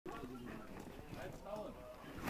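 Faint, distant voices talking, too low for words to be made out.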